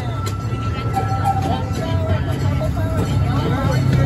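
Small amusement-park train running, heard from on board: a steady low rumble that grows slightly louder, with a thin steady whine above it.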